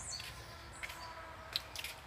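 Faint outdoor ambience with a short, high bird chirp falling in pitch right at the start and a few soft clicks in the second half.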